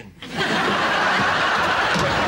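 Studio audience laughing, swelling up just after the start and holding loud and steady.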